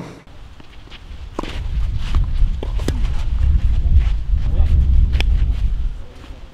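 Low, fluctuating rumble on the microphone, building about a second and a half in, with a few sharp knocks and faint voices on top.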